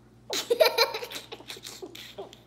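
A burst of laughter a moment in: a run of quick laughs that trails off into smaller ones.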